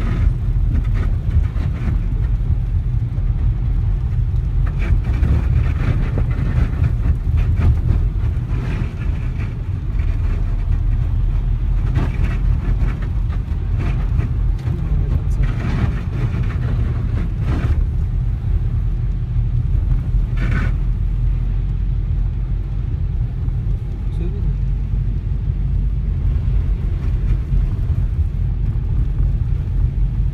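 Inside a moving car on a wet, slushy street: a steady low rumble of the engine and tyres on the wet road, with someone laughing near the start.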